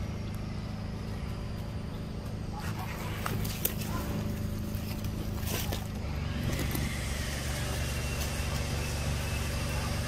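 A steady low hum like a motor running, its pitch shifting slightly about six seconds in, with a few short faint clicks.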